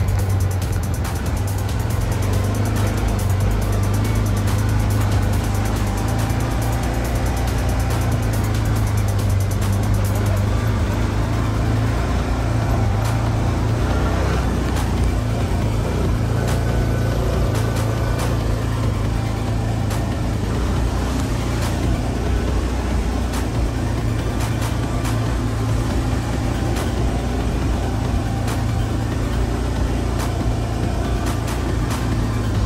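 Side-by-side UTV engine running steadily as the machine drives along a rough dirt trail, with music playing over it.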